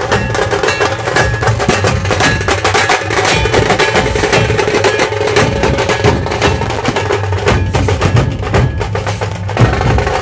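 Maharashtrian dhol-tasha ensemble playing: many large dhol barrel drums beaten with a stick and a cane, together with small tasha drums struck with thin sticks, in a loud, dense, continuous rhythm.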